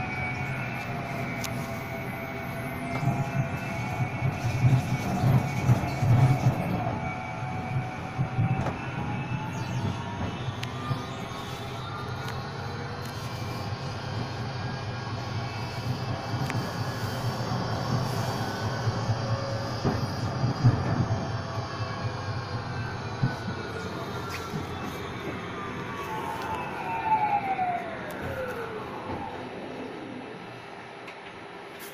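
Electric tram running on its rails with a low rumble, its traction motors and gearing whining: the whine rises in pitch as the tram speeds up about a third of the way in, holds, then falls steeply near the end as the tram brakes to a stop.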